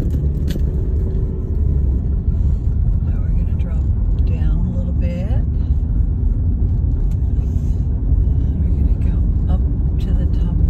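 Car cabin road noise: a steady low rumble of the engine and tyres rolling slowly over a gravel road.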